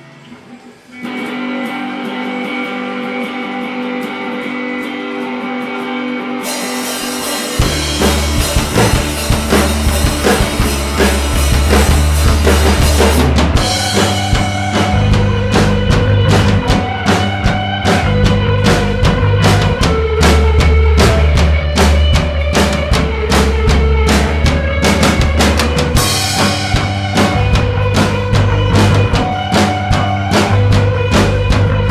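Indie rock played live on electric guitar and drum kit, with no singing. The guitar starts alone about a second in. Cymbals come in at about six and a half seconds, and the full drum kit joins a second later, the band then playing loudly with a steady beat.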